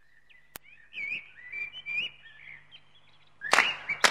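A string of high whistled notes gliding up and down for about three seconds, then a sudden loud burst of noise near the end.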